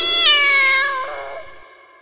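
A single long, drawn-out "meow": it rises at the start, is held for about a second, then fades away.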